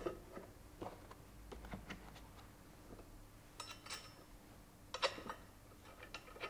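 Faint metallic clinks and taps of hex nuts being spun by hand onto the front-cover studs of a metal centrifugal pump casing, with a few sharper clicks in the second half.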